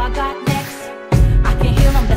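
West Coast hip hop instrumental beat. The bass and kick drop out for a moment about a third of a second in, then the full beat comes back in about a second in.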